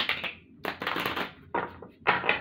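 A deck of tarot cards being shuffled by hand, in two bursts of riffling, rustling card noise: a longer one from about half a second in, and a shorter one near the end.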